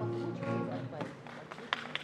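Acoustic guitar chord ringing and dying away, with a few light string clicks near the end as the song's accompaniment begins.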